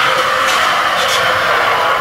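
Skateboard wheels rolling steadily along a corridor floor as the rider approaches, a loud, even rushing noise.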